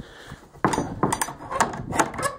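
Wooden horse-stall door and its latch being handled, a rattle of sharp knocks and clacks that starts a little over half a second in.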